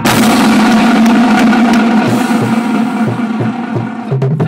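Marching drumline holding a loud, sustained roll on the snare drums. Low bass-drum notes come in at an even pulse from about halfway through.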